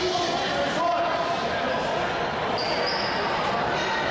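Echoing gymnasium sound of a basketball game: a basketball being dribbled on the hardwood floor over chatter and called-out voices, with a short high squeak about three seconds in.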